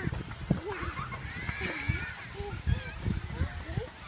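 Young children's voices, short babbling and squealing calls that rise and fall in pitch, with one higher drawn-out squeal near the middle. Several low thumps, likely from footsteps on the metal playground stairs, are mixed in.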